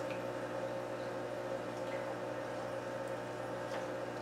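Steady electrical hum from running aquarium equipment, even in level with no splashes or knocks.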